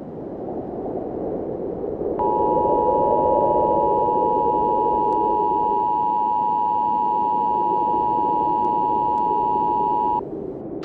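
Emergency Alert System attention signal: two steady tones sounded together in a harsh, unbroken beep, starting about two seconds in and holding for about eight seconds. It is the alert that heralds a broadcast winter storm warning. A low rushing noise runs underneath.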